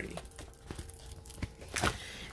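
Plastic-sleeved diamond painting canvas crinkling as it is handled and set aside, with a few soft clicks and a louder rustle near the end.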